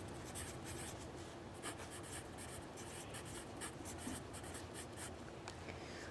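Pen writing on journal paper: a faint run of short, irregular scratching strokes as a word is written out by hand.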